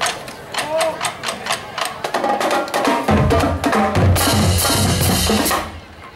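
Marching band drumline playing a percussion feature on drums and metal trash cans. Sharp strikes come first, bass drums join about three seconds in, and a loud metallic crashing builds about a second later before cutting off abruptly near the end.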